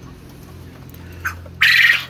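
A quail giving one short, loud call near the end, over a low steady hum.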